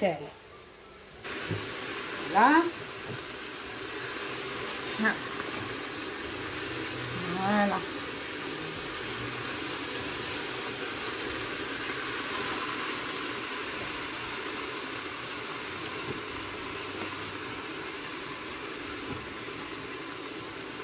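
Steady hiss of a stainless couscoussier steaming on the hob, water boiling in the pot below the basket, with a few short vocal sounds over it.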